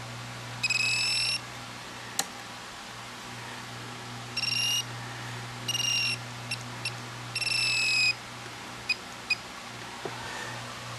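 Graupner MX-20 radio transmitter beeping as its keys are pressed to step a servo travel value: four high beeps, each under a second long, with a few short blips between them.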